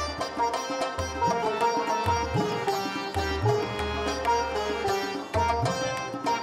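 Afghan art-music ensemble playing an instrumental piece: a sitar melody over tabla accompaniment. The tabla's bass drum strokes swoop upward in pitch about once a second.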